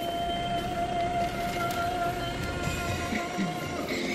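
A single sustained tone, held for about four seconds and rising very slightly before it stops near the end, over the low rumble of the Jeep Renegade Trailhawk's MultiJet II turbo diesel idling.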